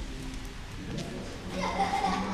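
Background noise of people walking on tile, with a few faint clicks, and a brief high voice sound like a squeal or laugh near the end.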